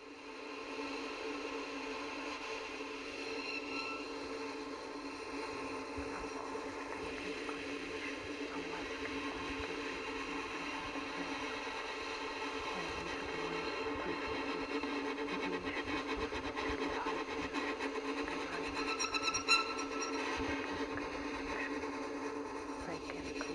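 A steady, sustained drone of several held tones, the sound-design bed of the soundtrack, with a brief brighter and louder tone cluster near the end.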